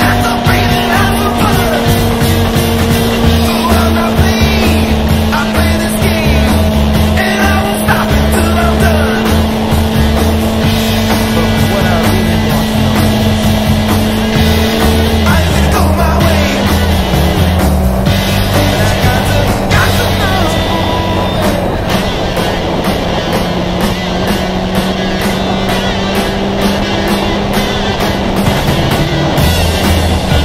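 Motorcycle engine running at a steady cruise, its note stepping down about halfway through, mixed with music that has a steady beat.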